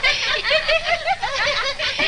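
Several people laughing together, a steady stream of overlapping laughs.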